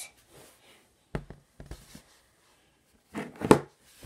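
Soft foam squishy toys dropped onto a tabletop, landing with short soft thuds: one about a second in, a fainter one just after, then a louder cluster of thuds near the end.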